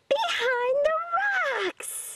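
A high voice vocalising a long, wordless sliding call whose pitch wavers up and falls away near the end, followed by a short hiss.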